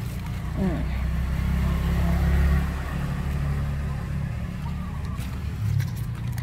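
A motor vehicle going past: a low engine rumble that swells to its loudest about two and a half seconds in, then eases off.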